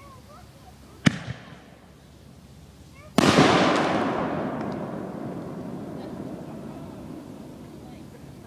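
A firework aerial shell: a sharp bang of the launch about a second in, then about two seconds later a much louder burst as the shell breaks low, its noise fading away slowly over the following seconds.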